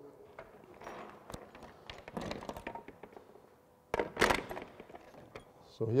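Tools and metal hardware being handled on a workbench: scattered light clinks and rustles, with one louder clunk about four seconds in.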